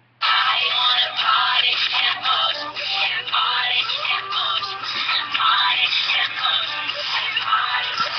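Pop song with singing playing on a radio, cutting in suddenly about a quarter second in.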